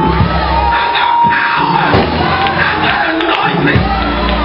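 Live church music with a drum kit and steady low accompaniment, under loud shouting and cheering from a congregation and a man's voice shouting with rising and falling pitch over a microphone.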